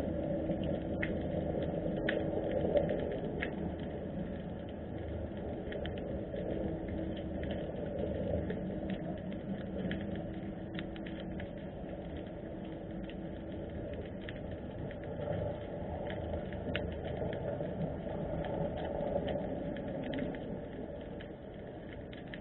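Underwater ambient sound: a steady low rushing noise with many scattered faint clicks and crackles, and a faint steady hum over the first half.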